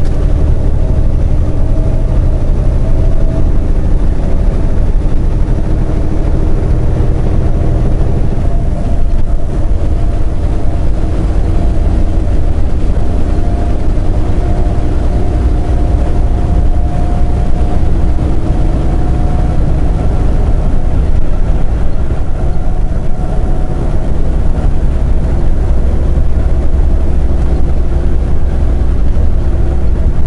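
Semi truck cruising on the highway, heard from inside the cab: a steady low rumble of diesel engine and road noise with a drone of engine tones.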